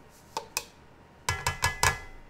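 A small bowl knocking against the rim of a stainless-steel stand-mixer bowl as salt and sugar are tipped in. Two light clicks come first, then a quick run of about five knocks with a brief metallic ring in the second half.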